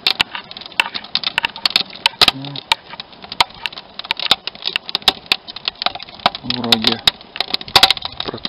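Wood fire crackling and popping in a barbecue made from a 200-litre steel drum, with sharp, irregular cracks several times a second.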